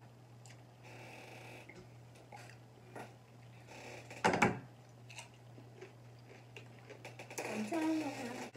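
Close-up eating sounds of a seafood boil: scattered small clicks and smacks of chewing and utensils over a low steady hum, with one louder knock about four seconds in and a short hummed "mm" near the end.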